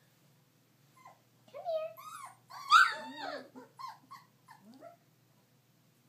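Four-week-old Goldendoodle puppies whining and yelping: a string of short cries that bend up and down in pitch from about one to five seconds in, the loudest near the middle.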